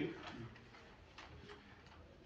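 A few faint, light clicks at irregular spacing over quiet room tone, from papers and a pen being handled at a table; a man's voice trails off at the very start.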